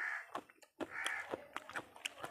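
A crow cawing twice, about a second apart, fairly faint, with light clicking sounds in between.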